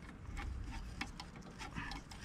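Faint, irregular clicks and small metallic taps of a socket tool on a swivel joint working a hose clamp as it is tightened on an engine coolant hose.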